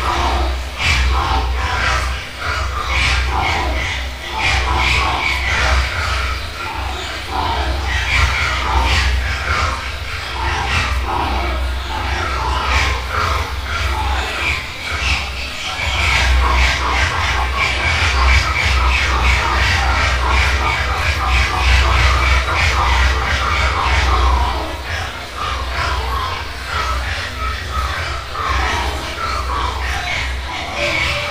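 Intro of a live rock recording: a steady low drone with crowd shouting and noise over it.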